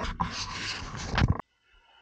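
Rustling and scraping of wiring harnesses and the plastic-and-metal case of a car stereo head unit being handled, with a couple of light clicks. It stops abruptly partway through, leaving near silence.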